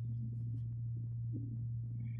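A steady low hum that holds one pitch without change.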